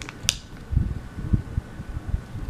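Light handling noises: one short sharp click about a quarter second in, then a few soft low bumps.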